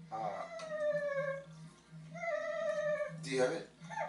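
Two long, whiny calls, each about a second long and falling in pitch, then a short rough cry a little after three seconds.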